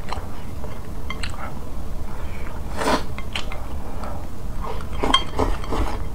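Wooden chopsticks clicking and scraping against a ceramic bowl as the last of the rice is scraped out: scattered short clinks, with a longer scrape about three seconds in.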